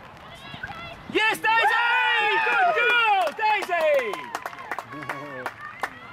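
Several spectators shouting and cheering at once, starting about a second in: overlapping calls that rise and fall in pitch for about three seconds, then trail off, with a few sharp knocks among them.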